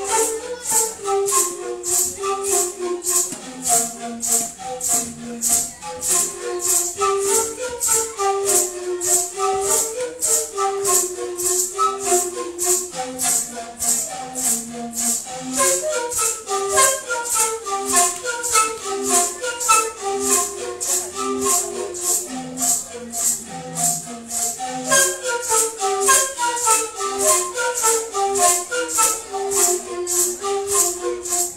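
Kuna panpipes (gammu burwi) played by several dancers, a melody of short repeated stepping phrases with falling runs in the second half. Maracas shaken in a steady, even beat underneath.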